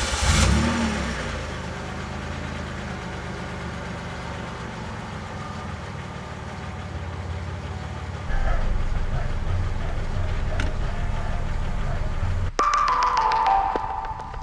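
Car engine cranked and starting, revving up briefly and falling back into a steady idle, heard from inside the cabin. About twelve seconds in it gives way to music.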